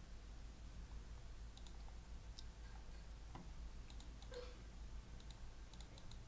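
Faint, scattered small clicks and ticks, irregularly spaced, over a low steady hum.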